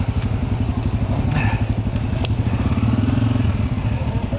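Dirt bike engine running steadily at low revs as the bike rolls slowly over a rough trail, swelling slightly near the end. A few sharp clicks and knocks come through from the bike over the ground.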